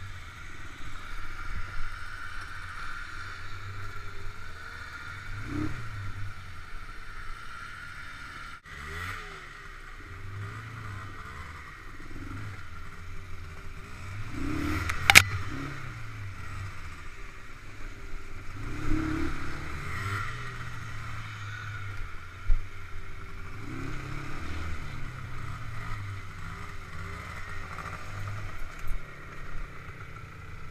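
ATV engine running at varying revs while riding over a rough, muddy dirt trail, with the machine rattling over the ruts. There are a few sharp knocks from jolts, the loudest about halfway through.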